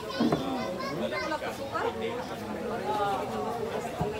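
Several voices talking at once, a background chatter of a gathering with children's voices among it.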